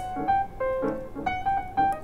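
Background piano music: a light melody of short, evenly placed notes.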